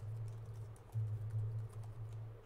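Computer keyboard typing: a quick run of keystrokes over a steady low hum.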